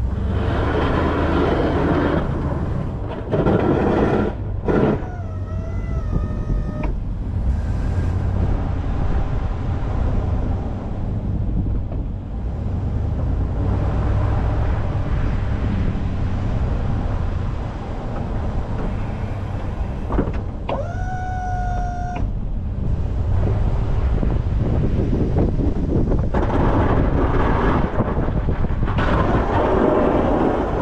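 Chevy 3500HD pickup pushing snow with a Boss DXT V-plow: the engine runs steadily under a rushing scrape of snow on the blade that swells near the start and again near the end. Twice, a short whine rises and holds for a second or so as the plow's hydraulic pump moves the blade.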